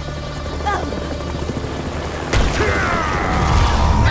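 Sound effects of an aircraft arriving overhead: a low rumble that swells, with a heavy boom a little over two seconds in.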